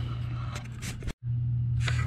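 Steady low hum of a running air handler, with a few light clicks and knocks of handling at the cabinet. The sound drops out for an instant a little after a second in, then the hum resumes.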